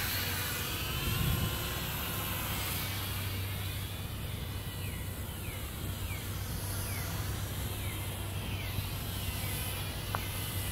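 H8C toy quadcopter in flight, its small geared motors and propellers, the gears running on ball bearings, giving a whine that rises and falls in pitch as the throttle changes, with short downward sweeps from about three seconds in. A steady low rumble runs underneath.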